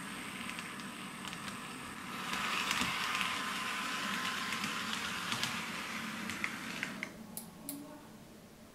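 TRIX model of the ČD class 380 (Škoda 109E) electric locomotive running on track at speed step 24, its motor and four-axle drive giving a steady whir with wheel noise, louder from about two seconds in until near the end. The drive is a little louder than expected, but nothing major. A few sharp clicks near the end.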